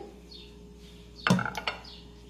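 A ceramic plate set down on a stone countertop a little over a second in: a short clatter with a brief ring and a few small clicks after it, over a faint steady hum.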